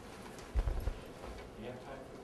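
A brief run of low thuds about half a second in, the loudest thing here, over faint voices in a lecture room.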